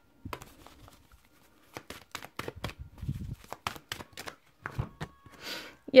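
A deck of tarot cards being shuffled and handled by hand: a run of light, irregular card clicks and snaps, with a short pause a little over a second in.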